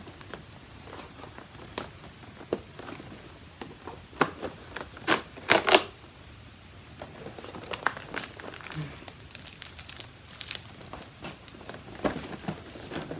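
Cardboard advent-calendar door being pried open and the packaged item inside pulled out: a series of crinkling, tearing crackles, densest around the middle and again near the end.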